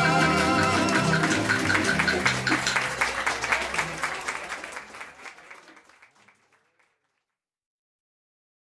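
Cuban son band led by the Cuban tres, with guitar, bass and bongo, playing the last bars of a song and fading out gradually to silence about two-thirds of the way through.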